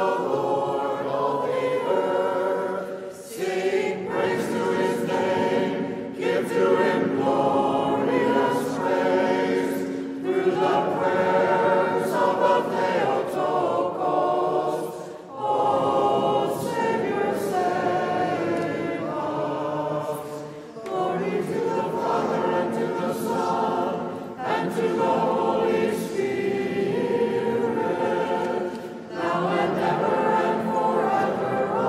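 Unaccompanied church singing: several voices chant a Byzantine liturgical antiphon together, in phrases broken by short pauses every few seconds.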